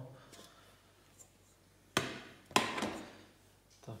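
Two cooking pots set down on a glass induction hob: two sharp knocks about two seconds in, half a second apart, the second with a short metallic ring.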